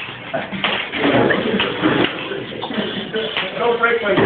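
Overlapping chatter of students talking over one another, with feet shuffling and scuffing on the floor during a mock sword fight, and scattered knocks.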